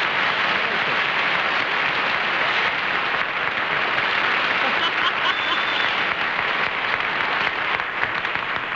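Studio audience applauding steadily, greeting the panel's correct guess of the mystery guest.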